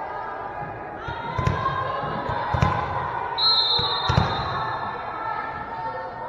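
A volleyball bounced three times on a hardwood gym floor, about a second and a half apart, as the server readies her serve; a referee's whistle sounds once, briefly, between the second and third bounce. Crowd chatter carries through the echoing gym.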